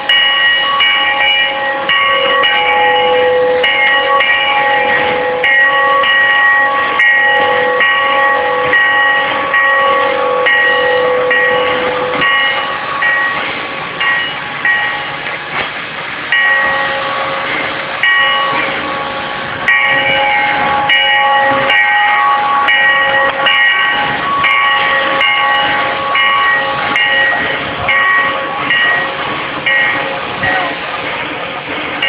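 Air-powered turntable motor running as it turns the Sierra No. 3 steam locomotive: a loud, steady whine of several tones over a hiss, pulsing on and off about once a second. The whine drops out for a few seconds near the middle, then resumes.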